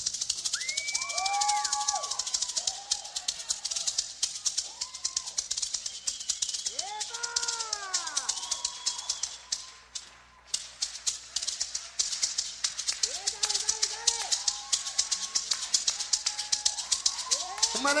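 Maraca shaken in a fast, steady rhythm with no drums or bass under it, overlaid by several voice-like calls that glide up and fall back in pitch. The shaking stops briefly about ten seconds in, then carries on.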